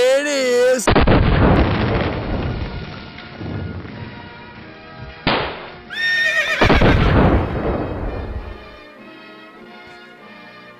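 A horse whinnies about six seconds in, between two sudden loud noises that each die away over a few seconds. A man's long wavering yell opens the stretch, and quiet music comes in near the end.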